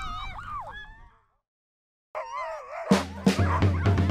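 Sled dogs in harness howling and yelping, cut off abruptly by a second of silence, then howling again. Music with a drum beat comes in about three seconds in.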